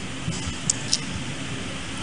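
Steady background hiss and faint room noise in a pause of a man's microphone speech, with two brief faint ticks a little before and just after a second in.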